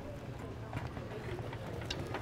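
Indistinct background voices with scattered light clicks and taps, over a low steady hum.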